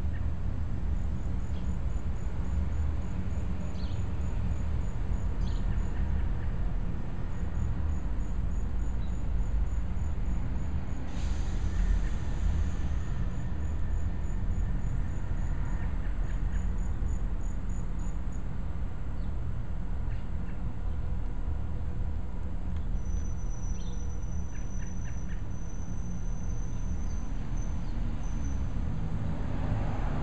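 Steady low outdoor rumble with faint insect chirping: a fast, evenly spaced, high-pitched pulsing through much of the first half and a thin high whine near the end. A brief hiss comes about eleven seconds in.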